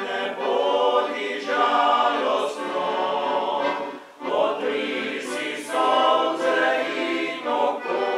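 Male choir singing in several-part harmony. The phrases are held, with a short break for breath about four seconds in.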